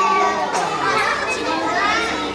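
Many young children's voices talking and calling out over one another, a lively, overlapping chatter of small kids.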